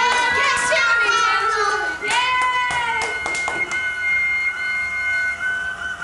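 Indistinct high-pitched voices of people and children talking in short bursts, fading to quieter sound in the last couple of seconds, over a few steady high whining tones.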